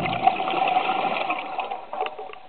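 A scuba diver breathing out through the regulator underwater: a rattling rush of exhaled bubbles that starts suddenly and fades over about two seconds.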